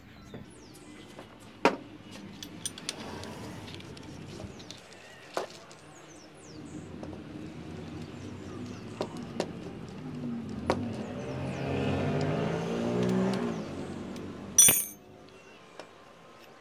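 Scattered metal clicks of a combination wrench working the top cap of a motorcycle front fork leg loose, with one sharp clank near the end. A vehicle engine hum swells in the background over the middle of the stretch and fades again.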